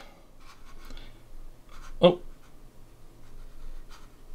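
Computer mouse sliding on the desk with a few faint clicks and rubs, over a faint low steady hum.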